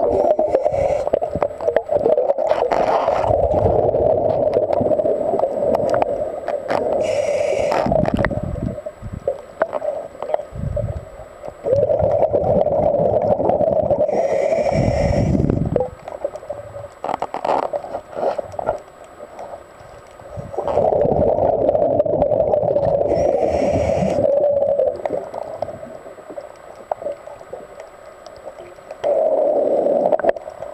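Scuba diver breathing underwater through a regulator: long rushing bursts of exhaled bubbles, several seconds each, with a short hiss from the regulator about every eight seconds.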